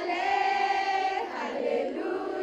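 A crowd of schoolgirls singing together in unison, holding one long note and moving to a new note just past a second in.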